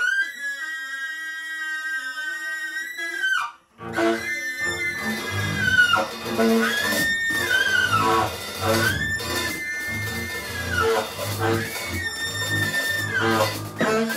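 Free-jazz trio: a tenor saxophone holds one long high note alone for a few seconds, stops briefly, then bowed double bass and drums come in under it while the saxophone wails a run of high held notes, each about a second long and bending down at its end.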